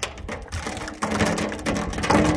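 Teak caprail creaking and cracking as it is pried up off an aluminum boat's rail with a pry bar and wedges, the wood and its bedding letting go. A sharp crack at the start, then a long, drawn-out creak from about halfway.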